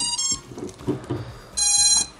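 FPV racing drone's brushless motors beeping the ESC power-up tones as the LiPo battery is plugged in: a few short beeps at the start, a few light handling knocks, then a longer steady beep about one and a half seconds in.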